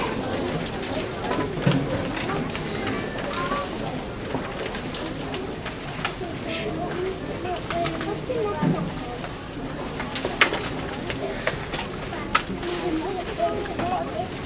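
Indistinct murmur of a seated audience, with scattered sharp clicks and knocks and no music playing.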